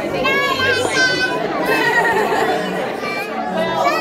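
Young children's high-pitched voices chattering and calling over a background of room chatter.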